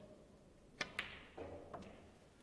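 Snooker balls striking: two sharp clicks close together about a second in, then a fainter knock near the end as the shot plays out.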